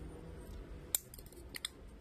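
A few sharp clicks and taps from a smartphone's plastic frame and glass being handled: one about a second in and a quick pair near the end, over a faint low hum.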